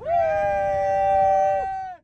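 Two people letting out a loud, long celebratory yell together, each holding one steady pitch. The lower voice breaks off with a drop in pitch shortly before the higher one ends.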